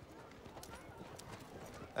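Faint murmur of a crowd of spectators, with a few light knocks scattered through it.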